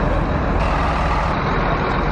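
Farm tractor's engine running steadily close by.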